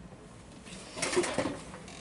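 Brief rustling and light knocking as a plastic toy figure is picked up off a table, starting about half a second in and fading near the end.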